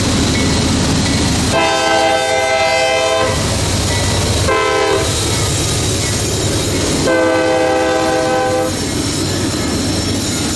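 CSX freight train's diesel locomotives passing close by, their engines a steady low rumble. The locomotive horn sounds three chord blasts: long, then short, then long.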